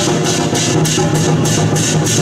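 Procession music from a drum-cart troupe: drums and cymbals keeping a steady, fast beat of about four strokes a second over sustained pitched tones.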